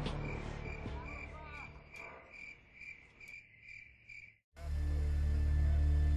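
Cricket chirping at a steady rate of about three chirps a second, over background music that fades away. The chirping cuts off near the end and a steady low hum takes over.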